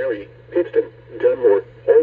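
Weather alert radio's voice reading out the list of town names in a flash flood warning, heard through the radio's small speaker over a steady low hum.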